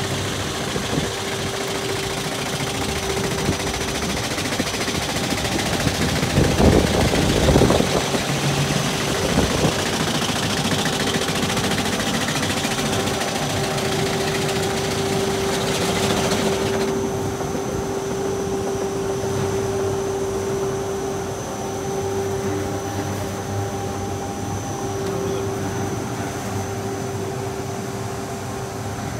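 Automatic flatbed rug-beating machine running, its beater rollers and drive giving a steady mechanical hum with a clattering noise. The knocking is louder for a couple of seconds about six seconds in, and the high hiss drops off suddenly a little past halfway while the hum carries on.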